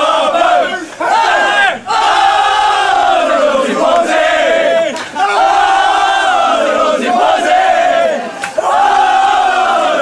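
A group of men chanting loudly in unison, in sung phrases of a second or two that rise and fall, with short breaks between them.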